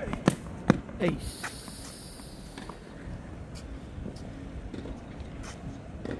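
A hard tennis serve on a clay court: the crack of the racket striking the ball, then two more sharp knocks within the first second as the serve goes through for an ace.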